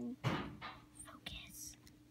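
A hand rummaging in a foil-lined bag of chips: a few short, faint crinkles and rustles.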